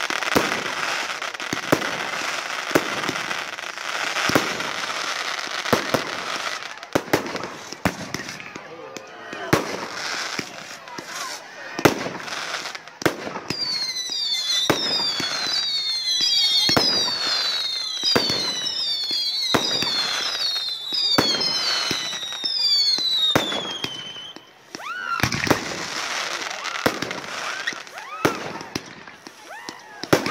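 Fireworks display: repeated sharp bangs of shells bursting all through. From about 14 to 24 seconds a dense volley of whistling fireworks plays, many overlapping whistles each falling in pitch, before the bangs carry on.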